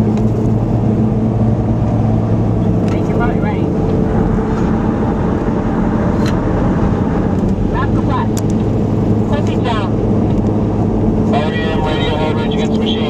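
Steady road and engine noise inside a Toyota FJ Cruiser's cabin at highway speed, a constant low hum and rumble. Short snatches of voices break in a few times.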